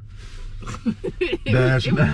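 Speech only: a man and a woman talking, with a brief laugh.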